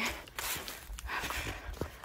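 A hiker's footsteps on a trail of dry leaf litter, with breathing between phrases over a low rumble of phone handling noise.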